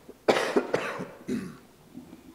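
A man coughing close to the microphone: a short run of harsh coughs starting a moment in, then a smaller cough about a second and a half in.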